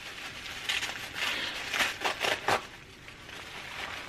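Wrapping crinkling and rustling in a few bursts as a wrapped item is unwrapped by hand, settling quieter near the end.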